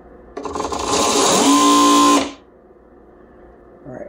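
Electric sewing machine motor run up under a prony brake load for a dyno pull: a whine that rises in pitch, holds steady for under a second, then cuts off about two seconds in.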